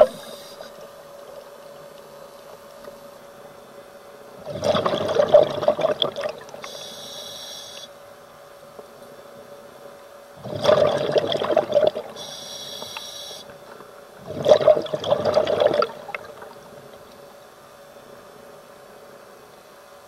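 Scuba diver breathing through a regulator underwater: three gushes of exhaled bubbles, each about a second and a half long, with two short high hisses of inhalation between them. A faint steady hum runs underneath.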